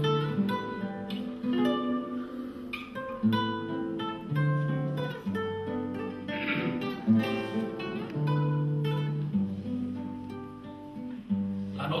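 Cutaway classical guitar played solo: a slow accompaniment of plucked chords over held bass notes, the introduction to a song. A man's singing voice comes in at the very end.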